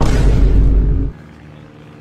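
A loud, deep boom starting suddenly and running for about a second before cutting off abruptly.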